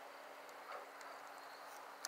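Faint scattered crackles and ticks from a burning bonfire over a low hiss, with a faint steady hum underneath.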